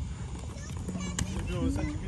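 Faint children's voices over a low rumble, with a few sharp clicks around the middle, from quad roller skates and a small bicycle rolling on an asphalt court.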